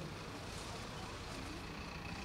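Low, steady outdoor background noise: a rumble of road traffic.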